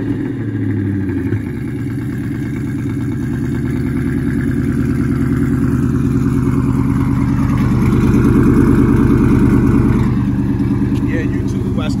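2000 Ford Mustang GT's 4.6-litre V8 idling just after a cold start. The sound swells gradually and eases back about ten seconds in. The exhaust has a leak that the owner says is still there.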